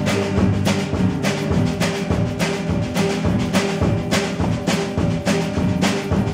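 Live acoustic band playing an instrumental intro: acoustic guitar and banjo with drums, keeping a steady beat of about two to three strokes a second under held chords, before the vocals come in.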